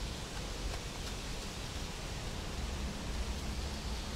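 Steady outdoor background noise: an even hiss with a low rumble underneath and no distinct events.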